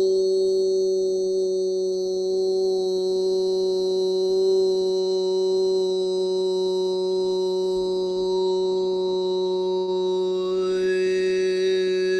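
A man's vocal toning with healing overtones: one long steady held note with a high, whistling overtone above it that slowly shifts. About ten seconds in, an overtone rises in pitch.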